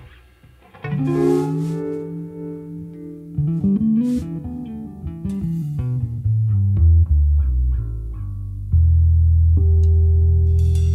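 Electric guitar and bass guitar playing a slow, loose passage: a guitar chord rings out about a second in, the bass walks down through a run of notes, and a loud low bass note is held from near the end.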